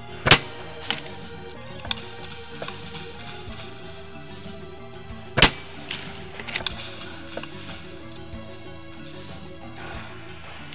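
Background music overlaid with sharp, short cracks from spring airsoft rifle shots: two loud ones, about a third of a second in and about five and a half seconds in, with several smaller clicks between.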